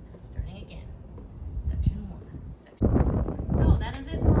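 Low outdoor background noise, then a sudden, much louder voice cutting in near the end.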